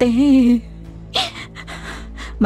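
A woman's voice holds one drawn-out vocal sound, then gives a short, breathy gasp just after a second in, over steady background music.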